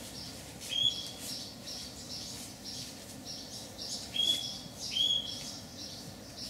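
Small birds chirping. A short, clear high call stands out three times among quicker, fainter chirps.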